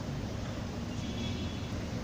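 Steady din of a large indoor crowd, many voices blending into one even hubbub with no single voice standing out.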